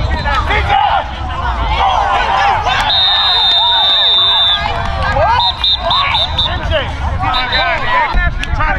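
Players and spectators shouting over one another, with a referee's whistle blown in one long high blast about three seconds in, then several short toots a couple of seconds later.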